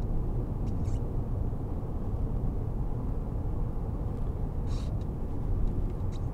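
Steady cabin noise of a 2015 BMW 520d M Sport driving at motorway speed: a low, even rumble of tyres on the road and the car's 2.0-litre four-cylinder diesel, heard from inside the car.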